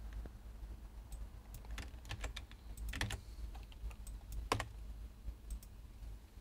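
Typing on a computer keyboard: scattered, irregular key clicks, with two louder keystrokes about three and four and a half seconds in, over a low steady hum.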